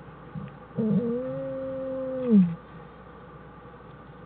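Black bear cub crying in the den: one drawn-out call about a second and a half long, wavering at the start, then steady, ending in a louder falling note.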